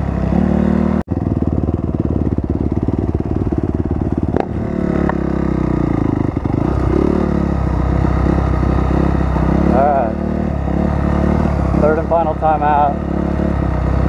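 Honda CRF250R dirt bike's single-cylinder four-stroke engine running steadily under the rider, heard close from a helmet camera, with a brief dropout about a second in.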